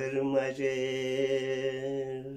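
A man singing a Wakhi ghazal unaccompanied, holding one long, steady low note. There is a brief break in the voice about half a second in.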